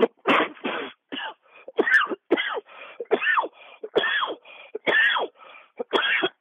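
A man in a long coughing fit from smoking a blunt: harsh, hacking coughs, about two or three a second, with no letup.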